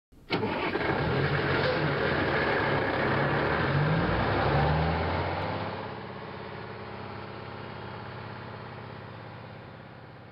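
Truck engine accelerating past, with the pitch rising several times over the first five seconds; it starts abruptly and then fades away slowly.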